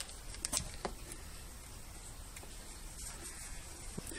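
Faint light clicks and taps from thin copper wire being worked by hand into the wooden posts of a model boat's railing, two small ticks in the first second, over a low steady room hum.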